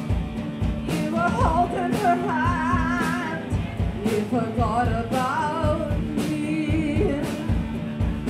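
Live rock band playing amplified: a singer over electric guitar and drum kit, with a steady drum beat and a held low guitar note under it. The vocal comes in two phrases, one starting about a second in and another about four and a half seconds in.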